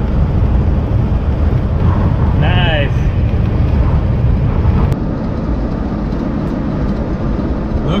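Car driving on an open road, heard from inside the cabin: steady low road and engine rumble, dropping slightly in level about five seconds in.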